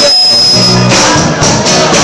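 Loud live band playing rock, with strummed acoustic guitars and a drum kit.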